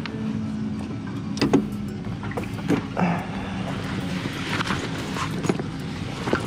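A 300 cc sport motorcycle's engine idling steadily at the roadside, with a few short knocks and rustles as the rider gets off and handles the bike and his gear.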